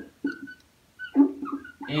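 Whiteboard marker squeaking in short, thin, high-pitched strokes as letters are written on the board.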